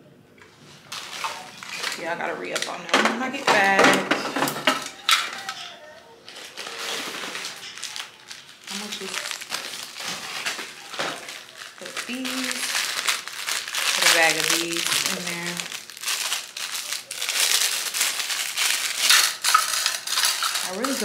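A plastic bag crinkling and small plastic pieces clicking and clattering in a clear acrylic tray as disposable lash glue rings are refilled by hand.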